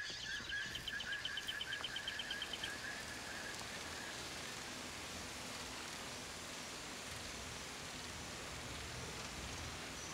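Faint night ambience: a small creature trilling in fast pulses, about eight a second, over a steady high whine for the first two to three seconds. After that only a steady, even hiss of background noise remains.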